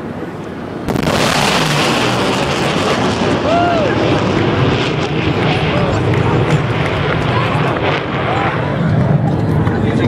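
A sudden loud shock about a second in, the sonic boom of a twin-engine F/A-18 passing at supersonic speed, then the loud, steady noise of its jet engines as it goes by, slowly losing its hiss.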